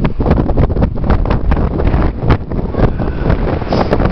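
Wind buffeting the camera microphone: a loud, low rumble broken by frequent sharp gusts.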